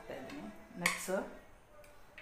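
Sharp little clicks and taps from a hand sprinkling chopped nuts over two glasses of smoothie, the loudest a little under a second in and a fainter one near the end. A brief bit of voice comes with the first click.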